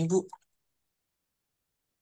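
A man's voice on a video-call line finishing a word, cut off after about half a second, then dead silence.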